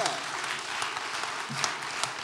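A small audience clapping and applauding, a dense patter of many hands.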